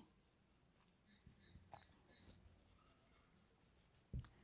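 Faint scratching of a marker pen writing on a whiteboard, in short strokes, otherwise near silence.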